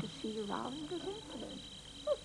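Faint speech of an elderly woman, low and quiet, with a brief wavering voiced sound in the first second and a half.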